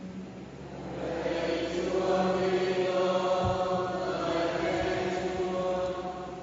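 A congregation chanting its sung response to the Gospel in unison, many voices holding slow, drawn-out notes. It swells in from about a second in and eases off near the end.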